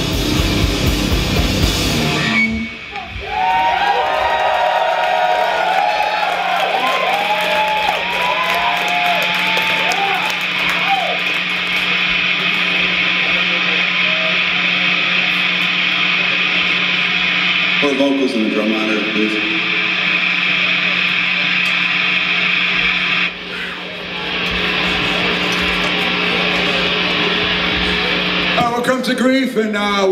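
A sludge metal band's song stops about two seconds in, leaving a steady amplifier hum and hiss from the stage. Over it the club crowd cheers, with scattered yells and whoops.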